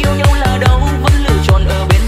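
Vietnamese electronic dance remix music with a fast, steady kick drum beat under synth chords and melody.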